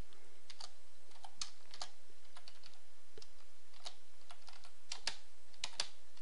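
Typing on a computer keyboard: light keystroke clicks at an irregular pace, with short gaps between bursts, as a line of text is entered.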